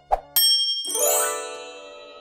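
Transition sound effect: two short soft knocks, then a bright ding that rings on as a chord of several tones and fades toward the end.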